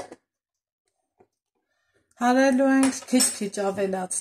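Near silence for about two seconds, then a woman's voice speaking.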